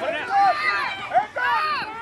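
Several high-pitched voices yelling at once, children and sideline spectators shouting during a play, with no clear words.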